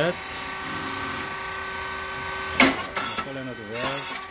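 Steady hum of a rice cake machine's motor and hydraulic pump running, with brief rustling or knocking bursts just over halfway through.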